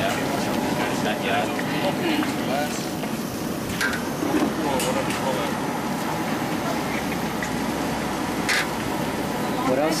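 Chicken, onion and carrot sizzling steadily in a large wok, with a few sharp metal scrapes of a spatula against the pan, under background chatter.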